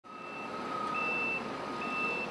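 Shipyard ambience: steady industrial noise with a repeating high electronic warning beep, half-second beeps about once a second, like a reversing alarm. A lower steady tone sounds alongside and stops about one and a half seconds in.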